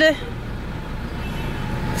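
Steady low rumble of a car heard from inside the cabin, with the end of a drawn-out spoken word at the very start.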